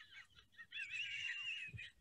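A woman's high-pitched, wavering squeal of helpless, near-silent laughter, about a second long, starting a little under a second in. It is exhausted, hysterical laughing that verges on crying.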